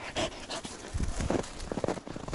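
A dog panting close to the microphone, mixed with irregular crunching footsteps in snow.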